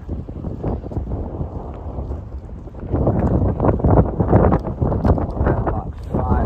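Wind buffeting the microphone in gusts, a low rumbling flutter that grows louder about halfway through.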